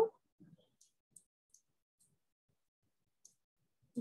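A few faint, scattered clicks and ticks from a stylus on a pen tablet while handwriting.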